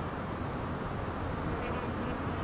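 Honey bees humming steadily in an observation hive: the low, even buzz of a whole colony at work.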